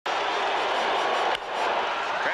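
Steady ballpark crowd noise, with one sharp crack about a second and a half in as the bat hits the pitch.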